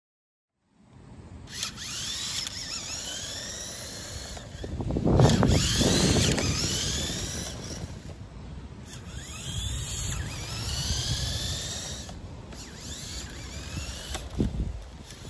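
LEGO Technic RC car's electric motors and plastic gear train whining as it drives, the whine sweeping up and down in pitch again and again as its speed changes. Under it runs a low rumble, loudest about five seconds in.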